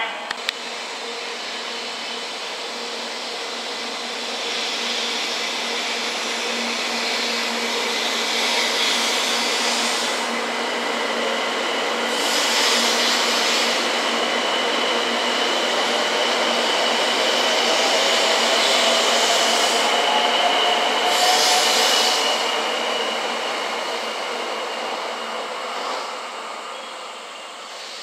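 A JR West 700 series Shinkansen pulling out of the station and accelerating away. Its running noise builds steadily, with a faint motor whine slowly rising in pitch, and is loudest about twenty seconds in. It then fades as the train clears the platform.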